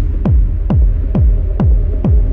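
Dark techno track: a deep, falling-pitch kick drum on every beat, about two a second, over a steady low bass hum, with the hi-hats dropped out.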